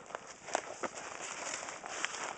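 Footsteps in dry fallen-leaf litter: a few light crackles and rustles over a soft background hiss.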